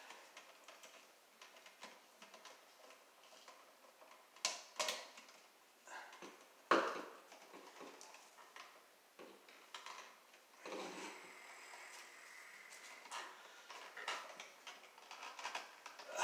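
Hand tools and wires being worked at an electrical outlet box: scattered small clicks and scrapes, a few sharper snaps, and a short rustle about eleven seconds in.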